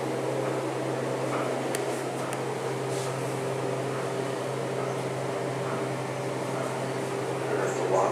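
Steady hum inside a Montgomery hydraulic elevator car during the ride, with a few faint clicks about two to three seconds in.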